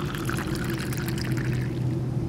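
Sound effect of juice being poured into a cup, a continuous liquid splashing and gurgling, over a steady low hum.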